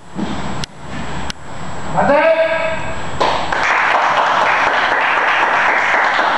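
Three sharp slaps about two-thirds of a second apart, a brief shout about two seconds in, then a small group of onlookers breaking into steady applause from about three seconds in as the timed sparring round ends.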